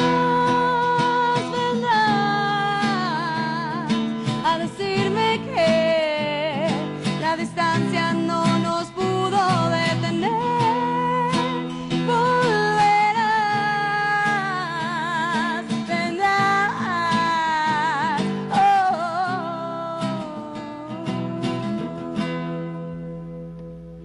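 A woman singing a ballad live with marked vibrato, accompanying herself on a nylon-string classical guitar. The voice and guitar die away near the end.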